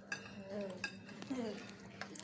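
A metal fork clinking against a ceramic plate while someone eats, a few light separate clinks.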